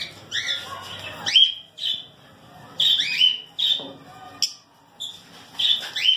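Pet lovebirds calling: a rapid, irregular series of short, high-pitched chirps and squawks, many of them rising quickly in pitch, about a dozen over the few seconds.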